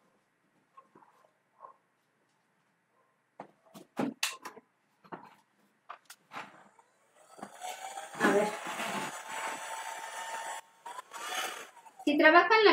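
Handheld electric heat gun being handled and plugged in with a few knocks and clicks, then switched on about seven seconds in: its fan spins up with a rising hum under a steady rush of air, cuts out briefly and starts again near the end.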